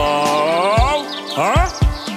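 Upbeat children's song backing music with a long sliding note, then a few quick rising chirps near the end as a cartoon bird sound effect.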